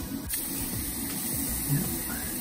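Steady hiss of liquid nitrogen sizzling on a cotton-tipped applicator pressed onto a plantar wart as it freezes, growing brighter about a third of a second in.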